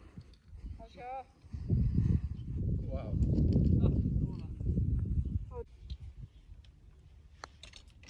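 Low rumbling buffeting on the microphone for about four seconds, starting about a second and a half in, as the camera is carried across the course. A few faint short high calls come through over it.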